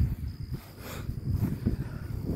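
A faint, steady chorus of insects, with low, irregular rumbling and soft thumps on the microphone from the phone being carried about.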